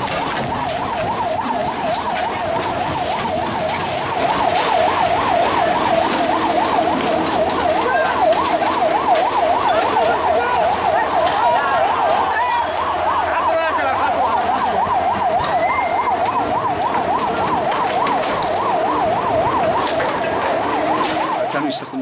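An emergency-vehicle siren sounding a fast, continuous yelping warble that cuts off at the end, over street noise.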